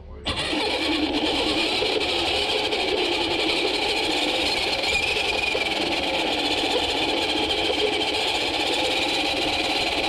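The motor and gears of a GMADE Komodo GS01 electric RC crawler whining steadily as it drives, heard close up from a camera mounted on the truck. The sound starts abruptly just after the beginning.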